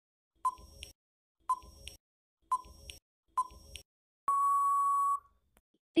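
Quiz countdown timer sound effect: four short beeps about a second apart, then a louder, longer steady beep about four seconds in that marks the time running out.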